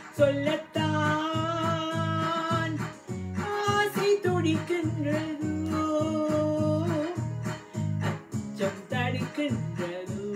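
A woman singing a Tamil love song in long held notes, over an electronic keyboard accompaniment with a steady, repeating rhythm.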